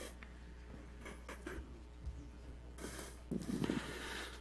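Quiet room tone with a steady low electrical hum and a few faint rustles, and a faint voice briefly about three and a half seconds in.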